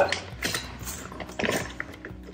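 Clear plastic bag crinkling and rustling as a hand reaches in among dry snacks: a run of small irregular crackles, with a louder rustle about one and a half seconds in.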